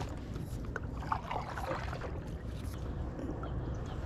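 Paddling a small boat: the paddle dipping and water splashing softly, a few splashes in the first half, over a steady low rumble.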